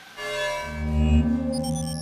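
Short synthesized transition sting: a held organ-like chord over a deep bass swell that rises and peaks about a second in, with a few high blips near the end before it cuts off.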